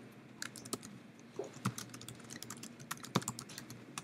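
Faint, irregular keystrokes and clicks on a computer keyboard, a dozen or so taps with uneven gaps, as files are searched for on the computer.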